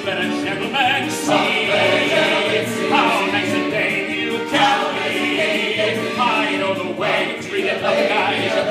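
Male chorus singing a stage-musical number in unison, over instrumental accompaniment with a regular bass line.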